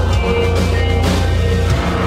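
Rock band playing live: electric guitar, bass guitar and drum kit together, with a heavy, loud low end and regular cymbal hits.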